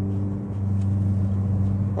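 Ford Focus ST Mk3's turbocharged 2.0-litre EcoBoost four-cylinder cruising at steady revs, heard from inside the cabin as an even low drone. The exhaust line resonates in the cabin, which the owner calls not bothersome.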